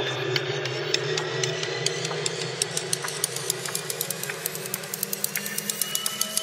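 A Nepalese bell sample processed in Steinberg Groove Agent 5, its tonal part split from its strike transients. The ringing tones glide slowly upward in pitch under a stream of quick clicks that come faster and faster.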